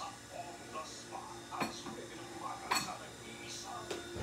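Faint, indistinct voices with two short, sharp clicks, the first about one and a half seconds in and the second near the three-second mark.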